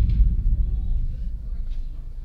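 A deep bass boom sound effect, already sounding as it begins, fading away steadily over about two seconds.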